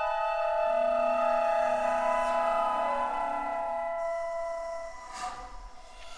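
Flute ensemble of piccolos, flutes, alto flutes and bass flutes holding long, overlapping sustained tones, with a low note joining about a second in. The chord fades out over the next few seconds, and a brief breathy rush of air follows near the end.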